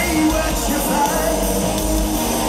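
A rock band playing live, loud and steady, with the lead singer's voice over the band, heard from the audience.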